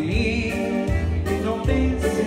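Accordion playing an instrumental passage of a dance tune, with held chords over a bass line that changes note about every three-quarters of a second.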